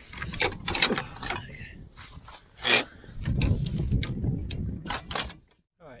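Waterproof fabric flapping and snapping in the wind right beside the microphone, several sharp rustling snaps, with gusts rumbling on the microphone in the second half. The sound cuts off shortly before the end.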